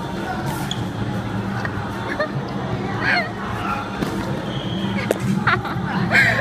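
Sports-hall background: scattered voices and short shouts from people around the bubble-football game, over a steady low hum.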